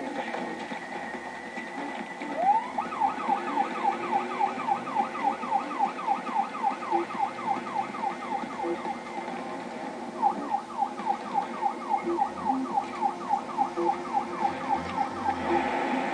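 Ambulance siren on a fast yelp, its pitch sweeping up and down about four times a second. It starts about two and a half seconds in, breaks off briefly around the middle, then runs again until near the end. It is heard through a television's speaker.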